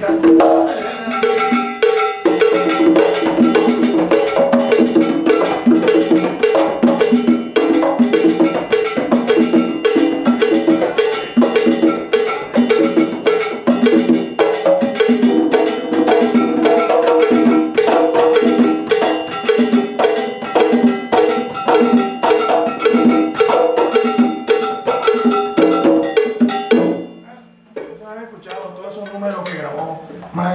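Afro-Puerto Rican drum rhythm: a conga holds a steady repeating pattern while a second drum answers it, over a dense, even beat of bright percussion strokes. The playing stops suddenly a few seconds before the end.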